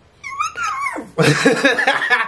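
A high, wavering squeal of a man's voice, then loud laughter about a second in.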